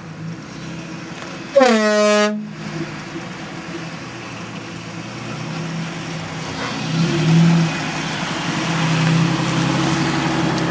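Air horn on a Nissan Xterra blown once, about a second and a half in, sounding for under a second with a brief rise in pitch as it comes on. The truck's engine runs underneath and swells briefly about seven seconds in as the truck moves over the rocks.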